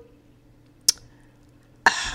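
A quiet pause over a faint steady hum, broken by a single sharp click about a second in; speech begins just before the end.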